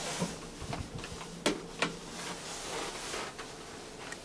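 Bauer elevator door mechanism working as the car opens at a landing: a few light clicks, then two sharp metallic clicks about a third of a second apart, roughly a second and a half in.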